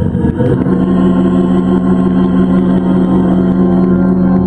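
Organ holding one steady, loud chord, with a low rumble in the bass. A sung phrase ends about half a second in.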